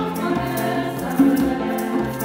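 Live song by a school ensemble: voices singing in Luxembourgish into microphones over violins, grand piano and conga drums, with a steady percussion beat.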